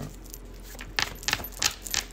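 Four short, sharp clicks in the second half, roughly a third of a second apart, over faint room tone.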